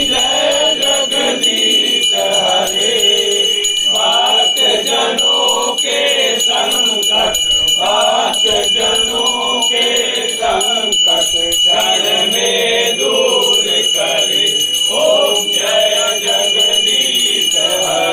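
A group of voices singing a devotional aarti hymn together, with a small brass hand bell ringing steadily throughout.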